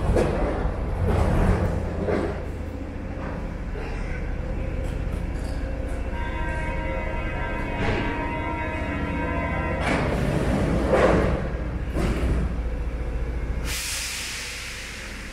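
A Paris Métro train standing at the platform, with a steady low rumble and scattered knocks. In the middle a steady buzzing tone sounds for about three and a half seconds, typical of the door-closing warning buzzer. Near the end there is a rising hiss of air.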